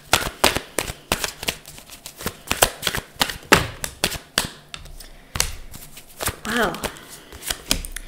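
A deck of tarot cards being shuffled by hand: a quick, irregular run of card clicks and slaps.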